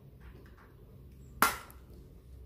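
A plastic eyeshadow palette's clear lid snapping shut: one sharp click about one and a half seconds in, over faint room tone.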